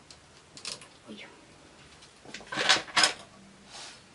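Light metallic clicks and scraping of the needles of a double-bed knitting machine and a hand transfer tool as stitches are lifted and moved by hand. The loudest is a short clatter about two and a half to three seconds in.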